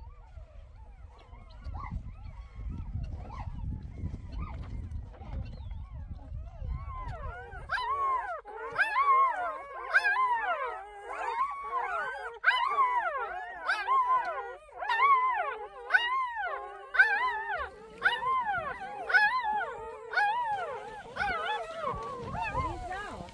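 A litter of young puppies whining and whimpering: many overlapping high cries that rise and fall, repeating over and over, starting about a third of the way in. Before that there is only a low rumble.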